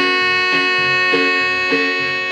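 Instrumental break of a marimba band with saxophones and electric bass: the saxophones hold long notes over a steady, even bass pulse.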